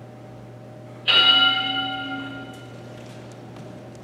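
Interval timer's bell chime, struck once about a second in and ringing out for about two seconds: the signal that the exercise interval is over.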